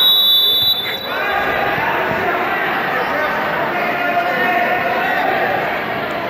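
A high, steady signal tone sounds for about a second, marking the end of a wrestling period, then overlapping spectator chatter carries on in a large gym.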